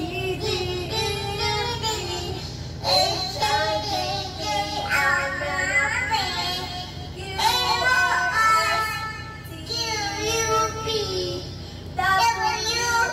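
A toddler singing into a karaoke microphone, her voice played through a small loudspeaker. She sings in short wavering phrases with brief breaks, over a steady low hum.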